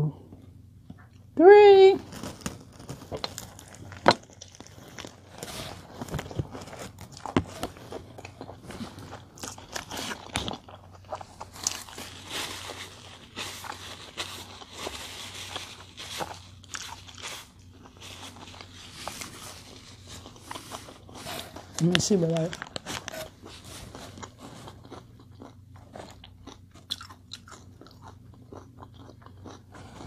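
Biting into and chewing a large mouthful of a four-patty cheeseburger with lettuce: a long run of small wet crunches and mouth noises. A paper napkin rustles in the middle as the hands are wiped.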